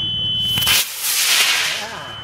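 Rocket motor igniting at liftoff, an E30 that the launch officer assumes is an Aerotech: a sudden loud rushing hiss starts about half a second in and runs for about a second and a half as the rocket climbs away. A steady high electronic tone heard under it cuts out as the motor lights.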